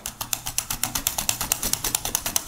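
A carrot being sliced on a mini mandolin board fitted with a dual-blade Titan Peeler, pushed quickly back and forth over the blade in a fast, even run of crisp scraping strokes.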